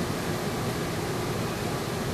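Steady hiss of room noise, even and unchanging, with no distinct event.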